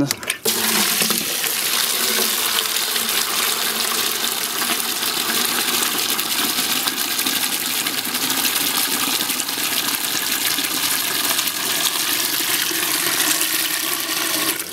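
Water from a single rain barrel pouring from a one-inch PVC pipe outlet into a plastic 5-gallon bucket, a steady, even gush and splash under the barrel's own gravity pressure, starting about half a second in.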